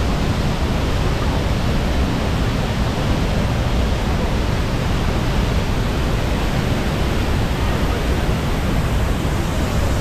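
Large waterfall plunging into its pool, heard close up as a loud, steady rushing.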